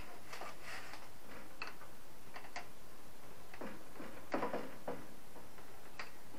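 Metal wrench clicking and clinking against a flare nut on an air conditioner's copper refrigerant pipe as the nut is tightened: a series of irregular light ticks, a little louder and more clustered near the end.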